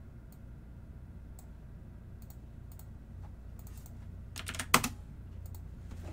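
Typing on a computer keyboard: a few scattered keystrokes, then a quick run of keys about four seconds in with one sharp, loud click, over a steady low hum.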